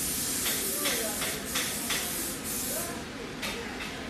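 A series of short hissing bursts, several in quick succession, over faint background voices.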